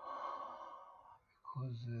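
A man's breathy sigh into the microphone, an exhale of about a second, followed by his voice starting to speak.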